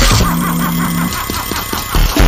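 Harsh electronic noise music: a low buzzing tone pulsing in short, even repeats through the first half, over a gritty, grinding noise texture.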